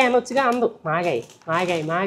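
Speech only: a person talking in continuous phrases.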